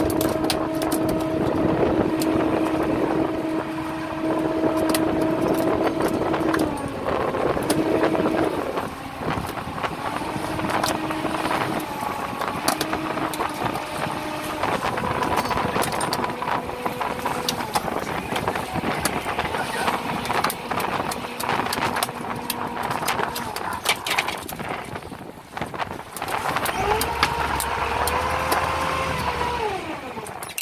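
A fishing boat's motor runs as a longline is hauled in: a steady hum that shifts up and down in pitch in steps, rising and then dropping off near the end. Frequent sharp clicks and clatter sound over it.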